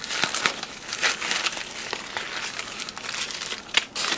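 Thin plastic packaging crinkling and rustling as small plastic parts bags are handled, with a sharper crackle near the end.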